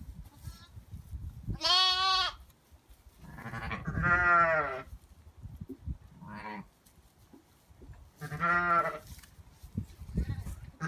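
A ewe and her newborn twin lambs bleating: four separate calls about two seconds apart, the first high-pitched, the second falling in pitch, the third faint.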